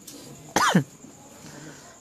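A man clears his throat once with a short cough about half a second in, its voiced end falling sharply in pitch.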